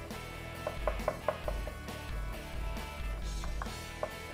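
Wooden pestle stirring a thick, creamy dressing in a wooden mortar, with a quick run of light knocks against the bowl about a second in and a few more later, over soft background music.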